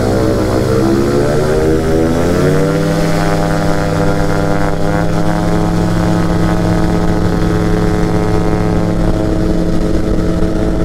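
P&M Quik flexwing microlight's engine and propeller opening up to take-off power. The pitch rises over the first two to three seconds and then holds steady through the take-off roll.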